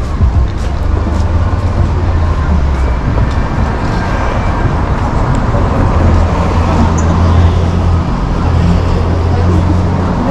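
Street ambience of a town street with traffic: a steady low rumble under an even wash of road noise.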